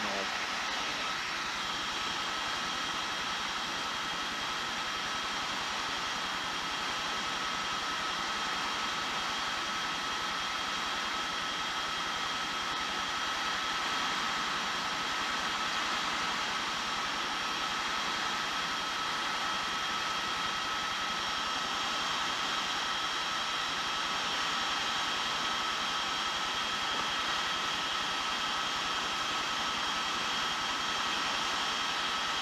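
Helicopter engine and rotor noise, a steady hiss with a few constant high whining tones that neither rise nor fall.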